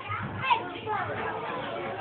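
Young children playing and people talking in the background, faint voices with no close speaker.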